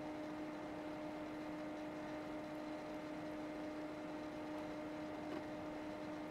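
A faint, steady hum made of two constant tones over a soft room hiss, with no distinct events.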